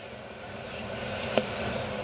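Ballpark crowd murmur that slowly swells, with one sharp pop about two-thirds of the way through as an 84 mph pitch smacks into the catcher's mitt on a swinging strike.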